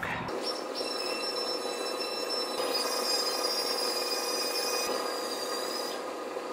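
Steady background hum and hiss with a few high, steady whines. The noise shifts slightly a few times, about two and a half and five seconds in.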